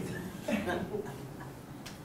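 A pause between phrases of talk: a brief faint voice sound about half a second in, then a single sharp click near the end.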